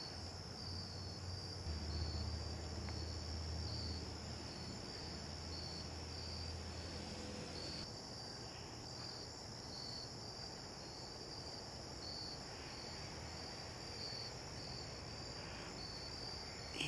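Evening chorus of crickets: a steady high trill with a regular, evenly pulsing chirp over it. A low hum sits under it and stops about eight seconds in.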